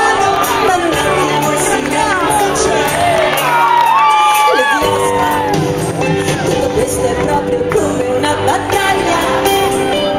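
Live rock band with a female lead singer performing an Italian cartoon theme song, with the audience shouting and singing along close by. About three seconds in, the bass and drums drop out while a long high note is held, and the full band comes back in about a second and a half later.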